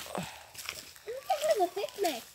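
A short, high, wavering vocal sound begins a little over a second in, over light footsteps on a woodland path.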